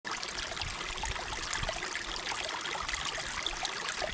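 A shallow stream running over rocks, a steady water sound.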